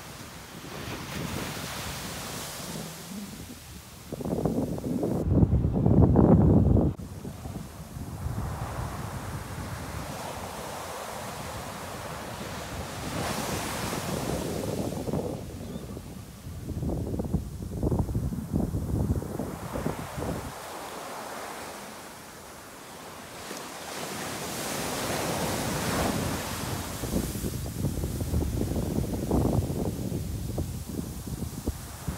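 Ocean surf washing on a sandy beach, with wind gusting on the microphone in bursts of low rumble, loudest about five to seven seconds in.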